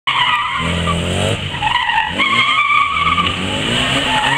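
A car's tyres squealing on concrete as it is driven hard through tight turns, with the engine revving up and down between them. The squeal dips briefly about a second and a half in, then comes back.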